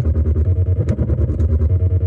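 Arturia MicroBrute analog monophonic synthesizer playing a fast, repeating techno-style bass pattern in short even pulses, with a higher note recurring over it, while its knobs are twisted live.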